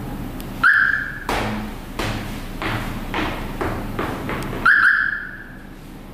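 Two short, loud high-pitched beeps from a 2017 Nissan X-Trail answering its remote key fob, about four seconds apart: the lock or unlock confirmation signal. Several softer knocks sound between them.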